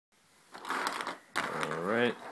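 A person's voice: a breathy, rustling sound about half a second in, then a drawn-out vocal sound that rises in pitch near the end.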